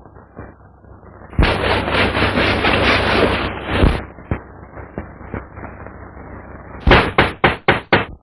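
A loud rattling clatter lasting about two and a half seconds, with a heavy thump as it starts and another as it ends. Near the end comes a quick run of six sharp knocks.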